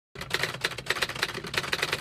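Typewriter-style typing sound effect: a fast, even run of key clacks that starts a moment in and cuts off sharply.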